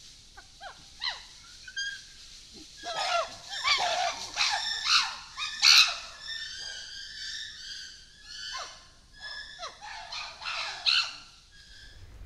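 Chimpanzee giving a series of loud, high-pitched cries in several bouts, starting about three seconds in. They are the calls of a frightened chimp warding off others it is scared of. A few faint rustles come before them.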